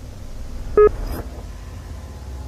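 One short electronic beep a little under a second in, over a steady low rumble and hiss of tape-style background noise.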